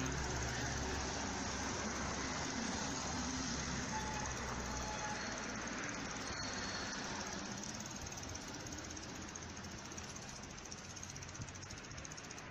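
Street traffic: a low vehicle engine hum fades away over the first five seconds, leaving a steady road-noise hiss that slowly quietens.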